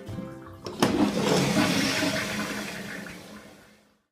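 Dual-flush toilet being flushed with its lever: a sharp start a little under a second in, then a rush of water that gradually dies away.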